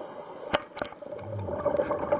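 A scuba diver's breathing regulator heard underwater. A high hiss of inhalation cuts off about half a second in, two sharp clicks follow, and a low bubbling gurgle of exhaled air comes near the end.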